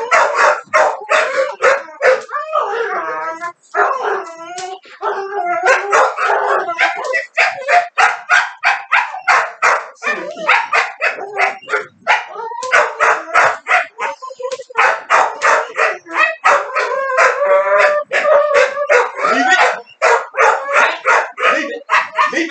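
Pit bulls barking rapidly and without let-up, about three barks a second, broken by a few wavering, howling whines.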